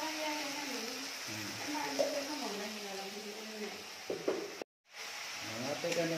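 Ground masala paste sizzling as it fries in oil in a kadhai, stirred with a steel spatula, with a couple of light knocks of the spatula against the pan. The sound breaks off completely for a moment near the end.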